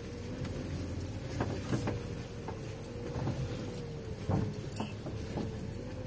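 Car driving slowly over a rough unpaved street, heard from inside the cabin: a steady low engine and road rumble with a faint steady whine, and irregular small rattles and knocks from the car jolting over the bumps.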